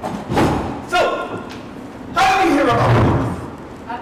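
People talking, with a single thump near the start.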